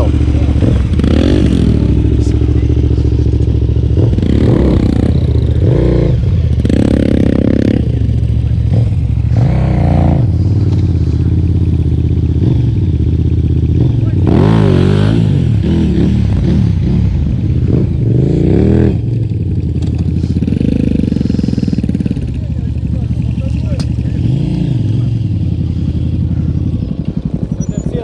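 Large adventure motorcycles running close by, a steady engine drone with repeated short revs that rise and fall every few seconds, as riders spin the rear wheel to break it loose and pivot the bike in an elephant turn.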